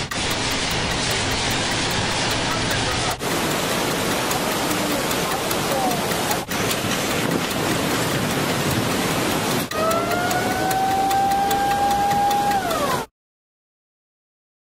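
Dense rushing, rattling noise with voices mixed in, in several abruptly cut segments. In the last few seconds a steady tone comes in, holds and slides down. Then the sound cuts off to silence.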